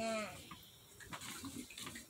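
A young child's drawn-out voice trailing off with falling pitch in the first moment, then faint rustling and light taps of a paper sheet being folded and pressed flat on a cardboard box.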